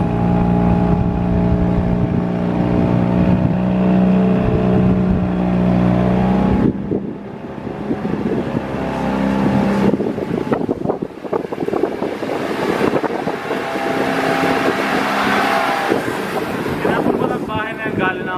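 Tour boat's motor running with a steady hum. About seven seconds in the sound changes abruptly to a rougher, noisier mix of engine and wind on the microphone.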